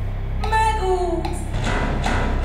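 Pop backing music with a steady bass under a woman singing one long note that sinks slightly in pitch, starting about half a second in.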